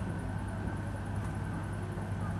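A pause in the speech: a steady low hum under faint room background, with no other event.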